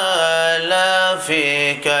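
A man chanting Arabic in a slow, melodic intonation into a microphone, holding long notes and sliding between them. The pitch steps down about halfway through.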